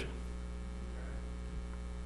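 Steady low electrical mains hum, a constant buzz with a stack of overtones.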